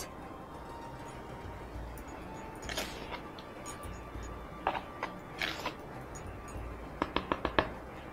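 A spoon tossing chopped parsley, tomato and cucumber salad in a bread bowl: a few soft rustling, crunching strokes, then a quick run of light clicks near the end.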